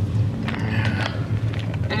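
Steady low rumble of a car's engine and tyres, heard from inside the cabin during a slow drive.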